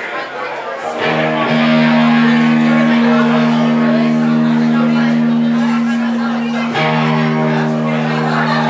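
Live rock band playing loud with electric guitar holding long, ringing chords and a voice over the top. The chord drops out briefly at the start, comes back in about a second and a half in, and changes again near the end.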